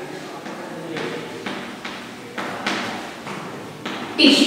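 Chalk writing on a chalkboard: a series of about half a dozen short taps and scrapes as the letters are stroked out.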